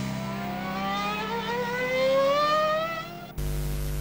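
Motor scooter engine revving up in one long, steadily rising whine. About three and a half seconds in, it gives way abruptly to the hiss of TV static.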